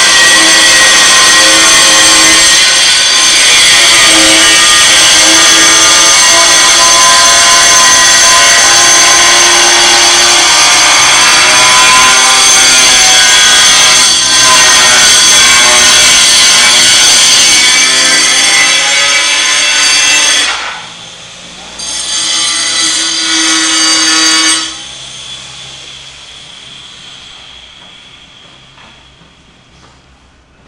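Abrasive cut-off saw (chop saw) running loud and steady with a high screech as it cuts metal. It stops about 20 seconds in, runs again briefly, then is switched off and winds down, fading away.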